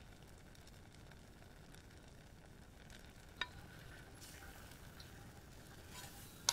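Near silence: a metal spoon stirring cranberry sauce in a stainless saucepan, with one light clink about three and a half seconds in and a faint hiss of the simmering pot in the second half.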